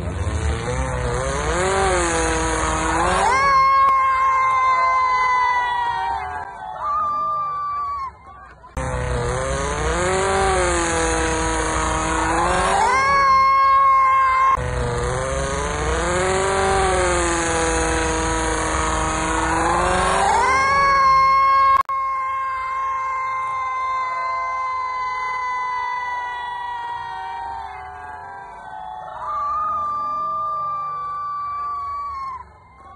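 Off-road race buggy's engine revving hard under load on a steep dirt hill climb, its pitch rising, dipping and rising again in several runs, with sharp breaks about 8 and 22 seconds in. After the second break one long high-revving note slowly falls.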